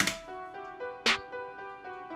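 Beat playback from the DAW: a synth melody of short eighth notes in E natural minor from the Nexus Arena Ambiance patch, with a programmed snare hitting at the start and again about a second later.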